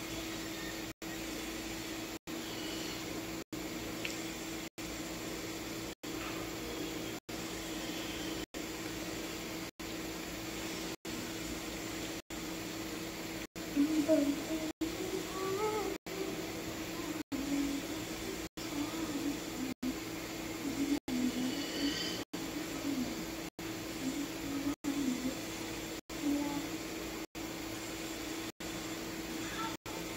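Steady low hum over even room noise, cut by short dropouts about once a second. From about halfway, a woman's quiet voice comes and goes without clear words.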